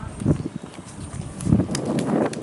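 A few low, irregular thumps: footsteps on stone paving and handling of a hand-held video camera as it is carried.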